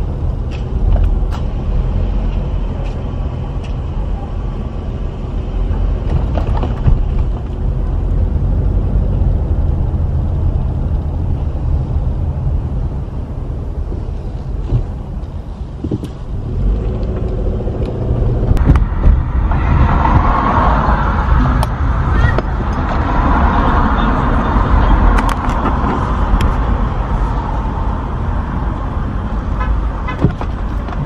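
A car driving slowly, heard from inside the cabin: a steady low rumble of engine and road noise. In the second half a louder, mid-pitched sound joins in for several seconds.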